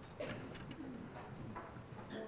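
Congregation sitting down in wooden church pews: faint shuffling with a few small knocks and creaks.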